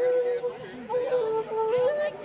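Irish flute playing a folk tune live, a melody of held notes moving in small steps up and down, over mountain dulcimer accompaniment.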